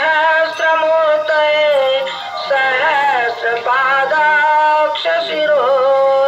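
Aarti hymn sung with musical accompaniment: a voice holding long, wavering notes in steady phrases.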